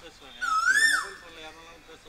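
One loud whistle-like call, rising then dropping steeply in pitch, lasting about half a second, about half a second in, over faint background talk.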